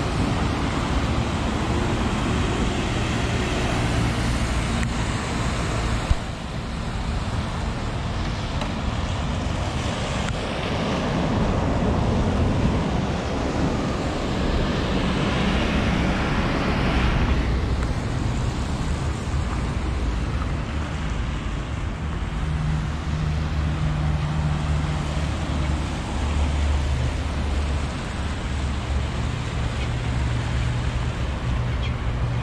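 Road traffic on a wet street: cars passing with tyres hissing on the wet road and engines rumbling, swelling as vehicles go by about ten and fifteen seconds in. A single sharp click about six seconds in.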